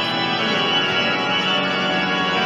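Church pipe organ playing steady, sustained chords.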